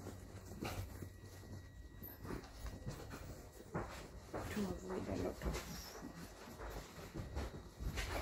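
Rustling and soft knocks of a fabric bag being folded up by hand, over a steady low hum. A brief whine-like pitched sound comes about five seconds in.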